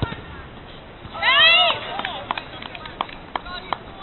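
A loud, high-pitched shout from a player about a second in, its pitch arching up and down, over an open outdoor pitch. It is followed by a few sharp knocks, likely a football being kicked, and short distant calls.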